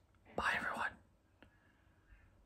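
A man whispers one short word, about half a second long, a little way in. A faint click follows about a second later.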